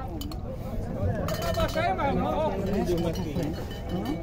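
Background voices of several people talking in the cattle pens, with no clear words.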